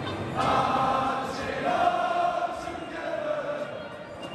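Football crowd in the stands singing a chant together, many voices swelling about half a second in, holding a long note through the middle and thinning out near the end.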